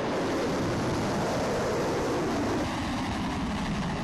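Missile rocket motor at launch: a loud, steady, dense roar as the missile lifts off and climbs.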